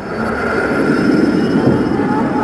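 A rumbling whoosh of noise that swells steadily louder, with a faint steady high whine running over it, like a jet or train passing.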